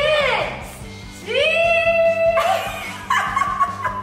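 A voice hooting and howling through a corrugated plastic pop tube: a falling call at the start, then a rising call held for about a second, then another near the end, over background music.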